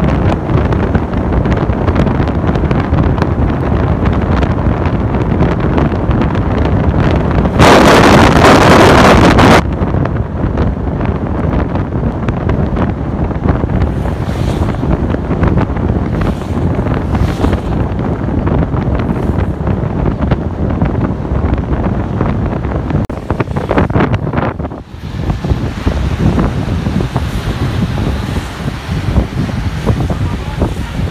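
Wind buffeting the microphone with a loud, steady rushing noise, rising to a much louder rush for about two seconds about a quarter of the way in.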